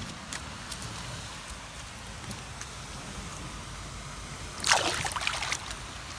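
A small bass is tossed back into the shallow lake water, making one short, loud splash about five seconds in over a steady low hiss.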